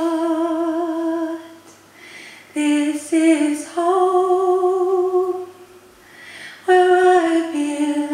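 A woman singing unaccompanied into a microphone: long held notes with vibrato, in three phrases broken by short pauses for breath, about two seconds in and about six seconds in.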